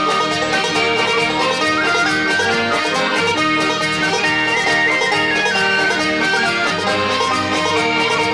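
Instrumental break of a lively Scottish folk song: held-note accordion melody over quickly plucked banjo and guitar.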